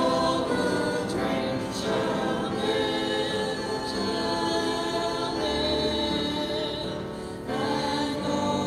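Church choir singing a hymn in held, sustained notes, a new phrase starting near the end.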